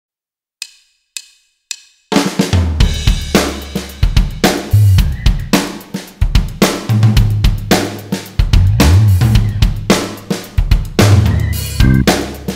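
Three short clicks as a count-in, then a rock band comes in at about two seconds. A drum kit plays a busy beat of bass drum, snare, hi-hat and cymbal crashes over a low bass line.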